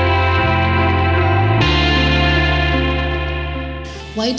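Background music of sustained chords, moving to a new chord about a second and a half in and fading out near the end.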